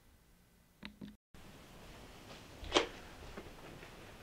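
Quiet room tone with small handling clicks as the camera's microphone is swapped for a Panasonic DMW-MS2 shotgun mic. The audio drops out completely for a moment about a second in and comes back with slightly louder background hiss, and a single sharp click sounds a little before three seconds in.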